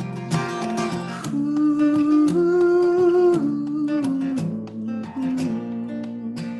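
Solo acoustic guitar, strummed, with a man singing along; he holds one long note from about a second in, steps it up in pitch halfway through and lets it go near three and a half seconds, then the strumming carries on.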